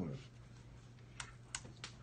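Three light taps on computer keyboard keys, a little over a second in, about a third of a second apart, over a low steady hum.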